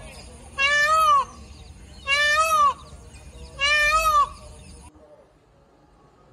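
Indian peafowl calling: three loud calls about a second and a half apart, each about half a second long and rising then falling in pitch. The sound cuts off abruptly about a second after the last call.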